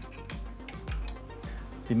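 Background music with a regular beat, over light metallic clinks from a hand-cranked Rollsizer Mini case-rolling tool as its handle is worked and brass cartridge cases move through it.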